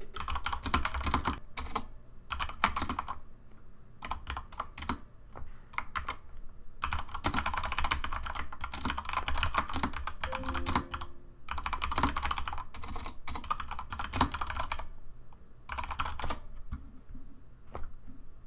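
Typing on a computer keyboard: quick runs of keystrokes broken by short pauses of a second or two.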